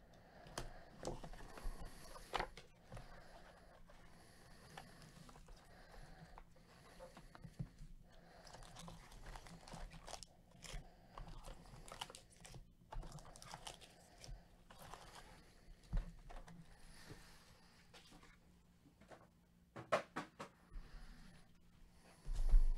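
Quiet, intermittent crinkling and rustling of foil trading-card packs and a cardboard hobby box being handled, with a few sharp clicks, several of them close together near the end.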